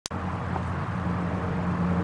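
A click right at the start, then a steady low rumble of outdoor background noise picked up by the camcorder microphone.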